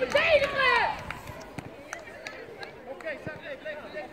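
Loud high-pitched shouting on a youth football pitch in the first second, then fainter distant calls from the field with a few faint, sharp knocks.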